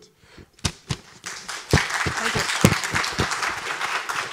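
Audience applause: a few scattered claps at first, building about a second in to steady clapping from the hall.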